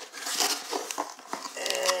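Packaging being handled and crinkled, a rustling with many small crackles.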